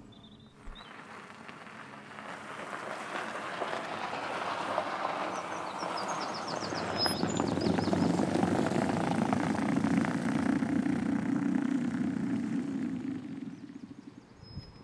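Tyre and road noise of an all-electric Rolls-Royce Spectre driving past, building up, loudest a little past the middle, then fading away. Faint bird chirps about halfway through.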